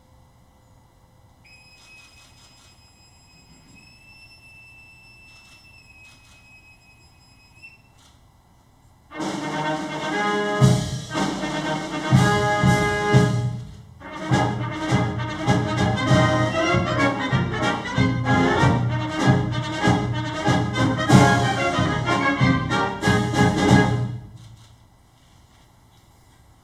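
A boatswain's pipe sounds one long, faint held whistle that steps up slightly in pitch, piping an arriving officer aboard. A brass band then plays two short phrases and a longer passage of about ten seconds, stopping shortly before the end.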